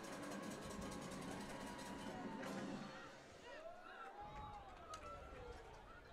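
Faint outdoor stadium ambience heard through the broadcast feed: distant crowd voices and music, with no single loud event.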